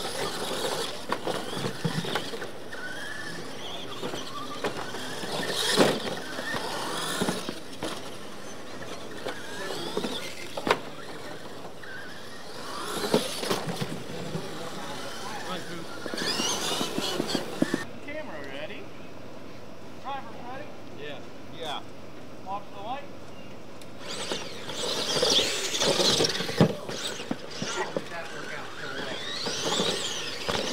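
Electric radio-control monster trucks racing on a dirt track: high motor and gear whine that rises and falls with the throttle, with a few sharp knocks as they land off jumps.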